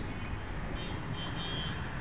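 Steady low rumble of distant city traffic, with a faint thin high tone about a second in.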